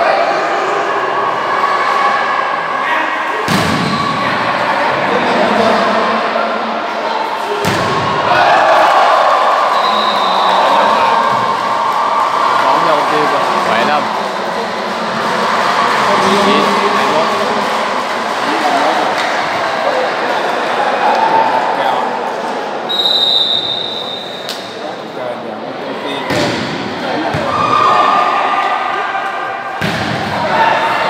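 Indoor volleyball match in an echoing sports hall: a steady murmur of spectators' and players' voices, broken by a few sharp thuds of the ball being struck, and a short high whistle blast about two-thirds of the way through.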